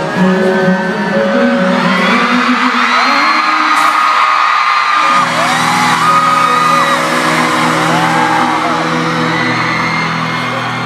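Amplified pop music from a concert PA, its sustained instrumental tones shifting about halfway through, with an audience's high-pitched screams rising and falling over it.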